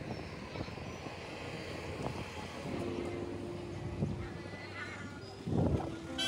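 Street traffic noise: vehicle engines and road rumble with a general hiss. A steady held tone comes in about three seconds in, and a short louder burst follows near the end.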